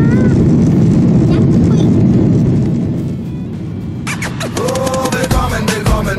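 Jet airliner cabin noise while taxiing: a loud, steady low rumble from the engines that fades away a little after halfway. About four seconds in, music with a beat and a voice comes in.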